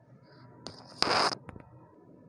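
Spring-loaded crocodile clip on a megger test lead being fastened onto a motor winding lead: a click, a short loud scrape of metal jaws on the wire, then another click.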